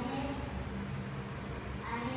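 A young girl's voice drawn out in a long, hesitating "uhh" while she thinks of an answer, over a steady low room hum.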